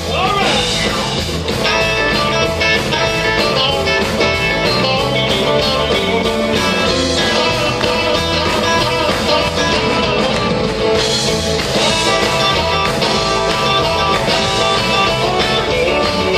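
Live rock and roll band playing at steady full volume, with guitar to the fore.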